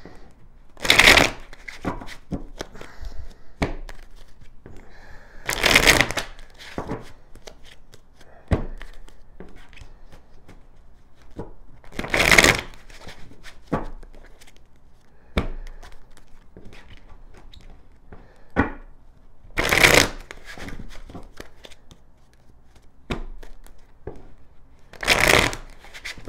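A deck of tarot cards being shuffled by hand: soft rustling and small clicks of the cards, with five louder bursts of shuffling roughly every six seconds.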